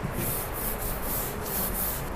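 Blackboard duster wiping chalk off a chalkboard: a run of about seven quick back-and-forth rubbing strokes.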